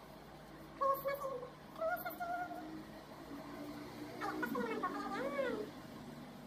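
A domestic cat meowing several times, in short pitched calls that come closer together near the end.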